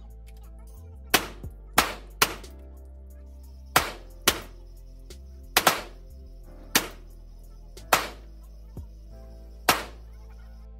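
Handgun shots at an indoor shooting range, about ten, irregularly spaced with some in quick pairs, each one sharp and loud with a short echo off the range.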